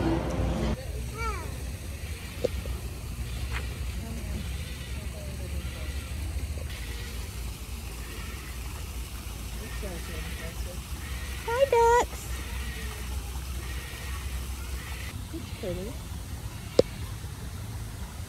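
Outdoor ambience with a steady low rumble, broken by a few short pitched calls; the loudest is about twelve seconds in, and there is a sharp click near the end.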